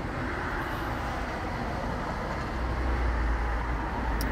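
Outdoor road traffic noise: a steady rushing with a low rumble that grows louder past the middle, as a heavier vehicle approaches.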